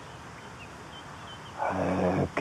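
A quiet pause with a low, steady background and a few faint, short high chirps, then about a second and a half in an old man's low voice starts up again.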